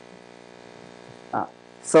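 Steady electrical mains hum with a row of evenly spaced overtones, fairly quiet; a short voice sound comes near the end, just before speech resumes.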